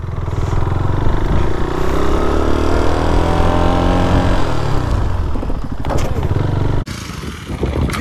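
KTM Duke 390's single-cylinder engine under throttle, its revs climbing smoothly for about four seconds and then falling away, with rushing wind noise. Near the end the engine sound drops off suddenly.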